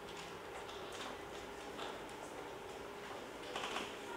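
Quiet room tone with faint, scattered clicks and a short rustle near the end.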